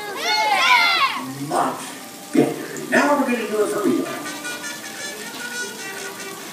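Voices calling out in the knock-knock game: a rising-and-falling sing-song call in the first second, then shorter calls with children's voices among them.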